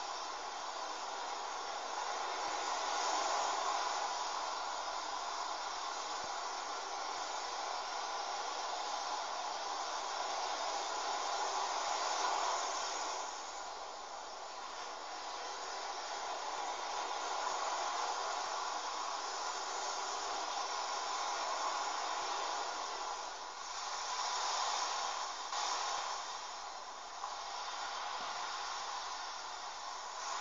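Steady hiss of background noise that swells and fades slightly, with no distinct handling sounds standing out.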